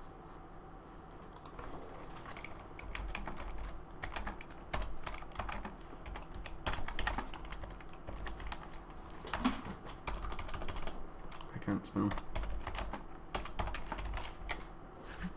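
Typing on a computer keyboard: runs of quick key clicks in uneven bursts with short pauses, starting a couple of seconds in.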